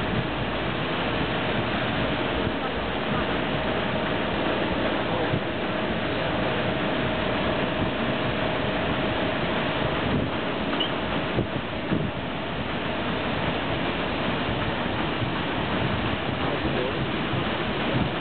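Steady running noise aboard the PS Waverley paddle steamer under way: water washing from the paddles and machinery, with wind on the microphone, and a faint steady hum through the first half.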